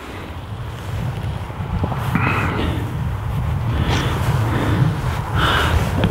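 Wind buffeting the microphone: a rough low rumble that grows louder over the first second or two, with two brief higher hisses of gusts.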